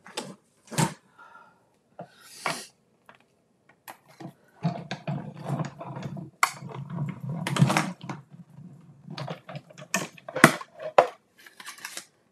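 Clear plastic cutting plates clicking and clattering as they are handled on a hand-cranked Stampin' Cut & Emboss die-cutting machine. In the middle comes a few seconds of rumbling as the plate sandwich is cranked through the rollers, and more plastic knocks follow as the plates are lifted off.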